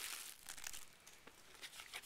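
Clear plastic packaging crinkling as it is handled and opened, loudest in the first half second, then fainter rustles.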